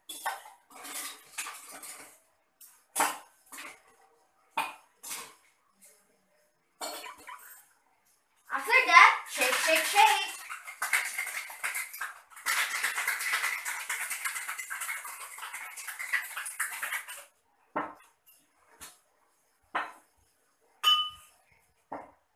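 Ice cubes dropped into a metal cocktail shaker with separate sharp clinks, then the shaker shaken hard: a continuous rattle of ice against metal for about seven seconds. A few single knocks follow near the end.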